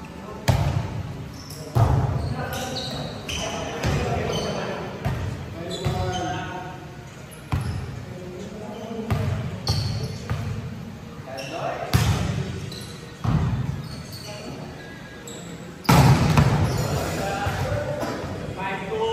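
A volleyball being struck during a rally: about six sharp slaps of hands or arms on the ball, ringing in a large gym hall. Players' shouts and calls come between the hits.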